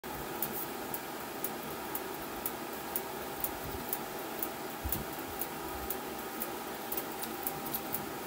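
Bat-rolling machine at work, its rollers turning an alloy bat under pressure: a steady hum with a light tick about twice a second.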